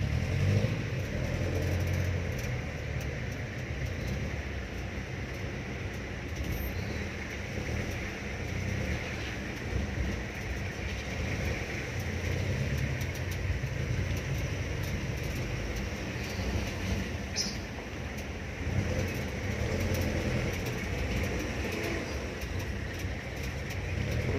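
Jeepney's engine and road noise as heard from inside the passenger cabin while riding: a steady low rumble with a hiss of wind and tyres, rising and falling a little with speed.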